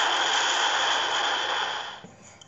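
A steady rushing hiss, even and loud, that stops shortly before the end.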